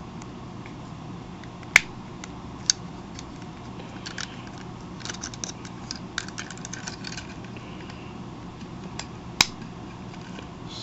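Plastic parts of a Galoob Star Wars Action Fleet toy ship clicking as they are handled and worked apart. Two sharp clicks stand out, one about two seconds in and one near the end, with a quick run of small clicks and rattles in the middle, over a steady low hum.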